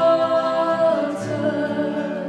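Live acoustic song: a woman's voice holds a long note with harmony voices, over acoustic guitar and cello. The held note gives way about halfway through.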